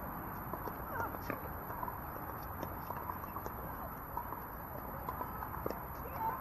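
Pickleball paddles hitting a plastic ball: short, sharp pops at irregular intervals, varying in loudness, over faint distant voices.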